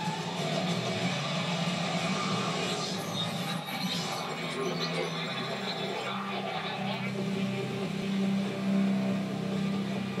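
A television playing in the room: soundtrack music with some dialogue, running steadily.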